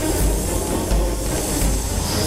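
A loud, steady hissing sound effect laid over dramatic background music, with a pulsing low bass beneath.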